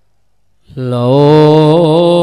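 A man's voice chanting loudly in one long, gently wavering held note. It starts abruptly about two-thirds of a second in, after near silence.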